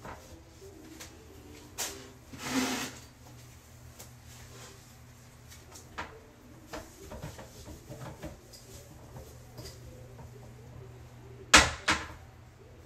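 Handling sounds from someone cleaning a toilet by hand: scattered knocks and clicks, a short rushing burst about two and a half seconds in, and one sharp loud knock near the end, over a low steady hum.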